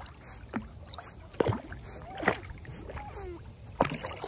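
Labrador puppy paddling through pond water: steady sloshing with irregular splashes from its paws, the loudest three spread across the stretch.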